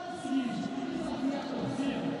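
Crowd noise in a volleyball arena under pitched music or chanting, with a few voices.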